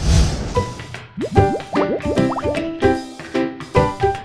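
Segment-opening jingle music with a steady beat. It starts with a sudden loud hit and has quick rising sliding notes between one and two and a half seconds in.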